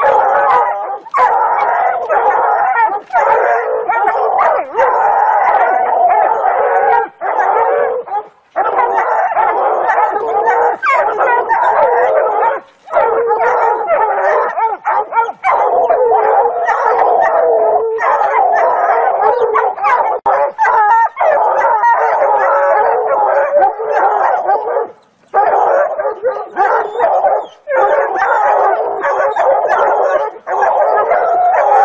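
A pack of hunting hounds baying and barking nonstop, several voices overlapping, with only brief pauses. This is the bay of hounds holding a mountain lion treed.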